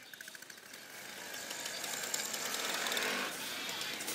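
A dense, rapid crackling rattle of noise, without clear pitch, in the closing sound texture of an experimental track. It swells louder from about a second in.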